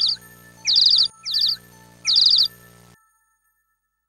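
Songbird chirping: two rounds of calls, each a quick falling note followed by a rapid run of high chirps, over a low steady drone. Everything cuts off about three seconds in.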